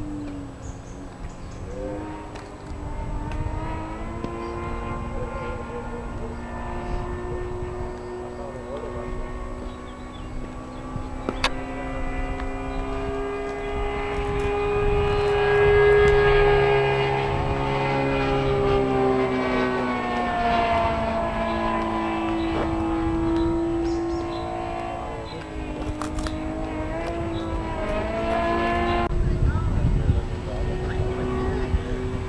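Engine and propeller of a large radio-controlled model aircraft droning steadily in flight, the pitch sliding up and down as the model passes and manoeuvres, loudest about halfway through.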